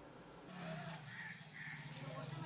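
Faint outdoor sound: two short bird calls a little past one second in, over a low steady hum.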